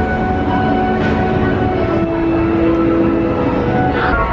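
Hogwarts Express ride train at the station platform: a steady mechanical rumble with humming tones, and a held low tone a little past the middle.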